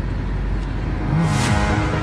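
Car cabin noise while driving: a steady low road and engine rumble, with a brief whooshing swell about a second in.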